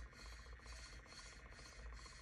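Faint rubbing of a strand of plastic Mardi Gras beads dragged over wet acrylic paint on a tumbler, a soft scratch repeating a few times a second.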